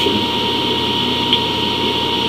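Steady background hiss and hum with a constant high-pitched whine, with no speech. There is one faint click about halfway through.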